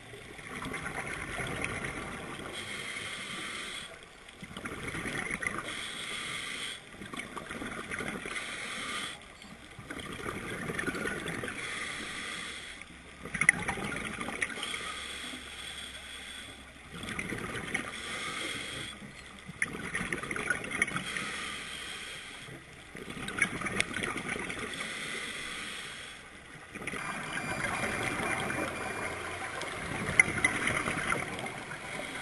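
Scuba diver's regulator breathing, heard muffled through an underwater camera housing: a slow cycle every few seconds of inhaled hiss and exhaled bubbles. There are a few sharp clicks, the loudest about halfway through.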